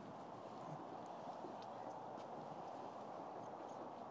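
Faint, steady background hiss of the outdoor setting, with a few soft, sparse ticks.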